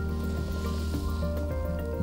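Background music with steady sustained tones, over a soft wet squishing from an oil-soaked foam air filter being squeezed and massaged by gloved hands.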